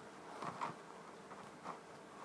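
Quiet room tone: a faint steady hum with a few soft, brief noises, one about half a second in and another near the end.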